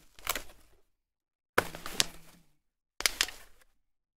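Plastic packaging crinkling and crackling as an office chair's parts are handled, in three short bursts.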